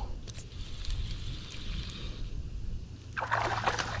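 A hooked white bass splashing at the water's surface beside the boat, a loud rough splashing that starts near the end, over a steady low rumble of moving water and handling noise.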